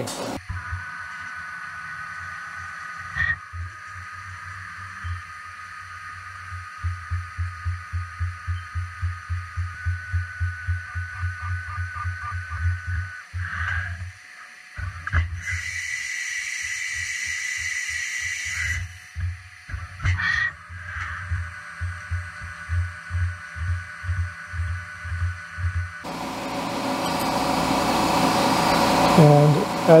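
Haas CNC mill drilling holes in the part. It makes a steady whine with a low pulsing about two to three times a second, a burst of hiss in the middle, and a hiss that rises near the end.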